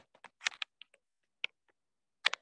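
Stylus tip tapping and ticking on a tablet's glass screen during handwriting: a string of irregular light clicks.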